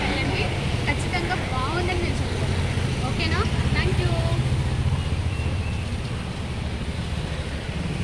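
Street traffic: a steady low engine rumble that swells about three to five seconds in as a vehicle passes, then eases off.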